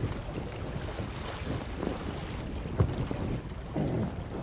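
Wind buffeting the microphone over the steady rush of a fast, shallow river, with a couple of faint knocks.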